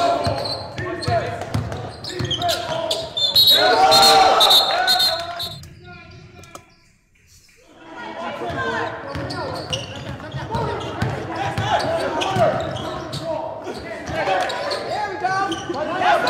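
Live gym sound of a basketball game: a ball bouncing on the hardwood court and players' voices echoing in a large hall. It drops away briefly about halfway through, then picks up again.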